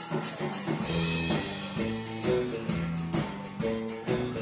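Instrumental band music: drum kit, double bass and guitar playing together, with regular drum hits over the bass line.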